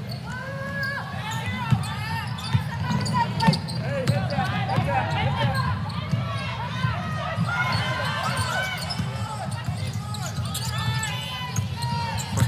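On-court sound of a live basketball game: a basketball being dribbled on the hardwood floor, with a few sharp bounces standing out. Under it runs a steady arena crowd murmur, with voices calling out.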